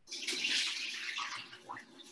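Water being poured off blanched greens through a strainer: a splashing rush that starts suddenly and tails off after about a second and a half.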